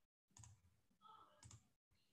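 Near silence, with two faint clicks about half a second and a second and a half in.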